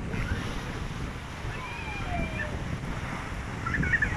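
Sea waves breaking and washing among the rocks of a breakwater, with wind rumbling steadily on the microphone.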